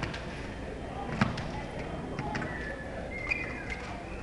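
Fencers' footwork on a piste over a gym floor: a sharp stamp about a second in, then lighter taps and short shoe squeaks, with voices murmuring in the hall.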